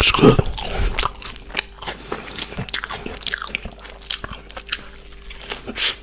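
Close-miked mouth chewing a fried chicken burger with pickles: wet crunches and mouth clicks, loudest in the first second, with another crunchy bite just before the end.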